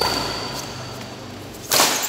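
Badminton racket striking a shuttlecock hard near the end, a sharp swishing crack; a fainter racket stroke sounds right at the start.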